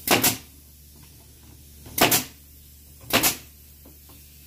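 Pneumatic brad nailer firing three times, driving short nails into half-inch wood: each shot a sharp crack with a quick puff of air. The first comes at the very start, the next about two seconds in, and the third about a second after that.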